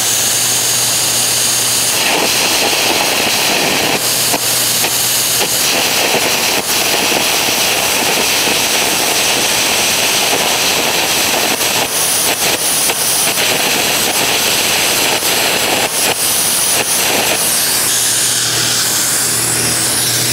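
Air carbon arc gouging: a loud, steady blast of compressed air through the carbon-rod torch, with the arc crackling, as it blows molten weld metal and slag out of an old weld seam in steel plate.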